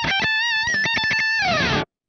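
Ibanez electric guitar playing a quick run of rising notes into a high note held with vibrato, then sliding down. The playing cuts off abruptly near the end.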